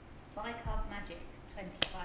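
A quiet pause with a few soft spoken words, then a single sharp click near the end.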